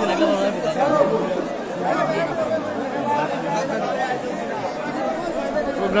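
Chatter of several men's voices talking at once, with no single clear speaker.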